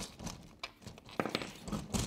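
Faint handling sounds: a few light clicks and knocks as a lawn scarifier cartridge is lifted out of the machine's plastic deck.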